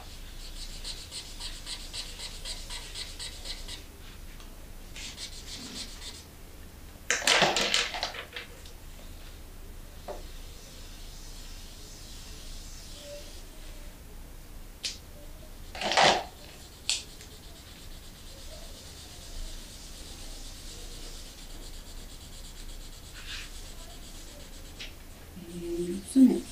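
Felt-tip markers scratching and rubbing on paper in rapid repeated strokes, busiest in the first few seconds, with two louder brief noises about seven and sixteen seconds in.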